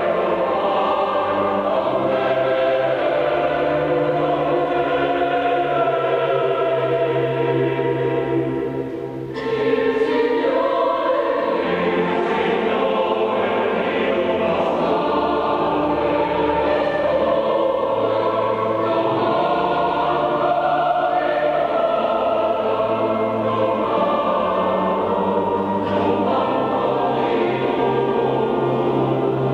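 Large mixed choir singing with pipe organ accompaniment, the organ holding low bass notes that change in steps. The music thins briefly about nine seconds in, then the choir enters on a new phrase.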